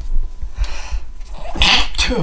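A man coughs once, sharply, near the end.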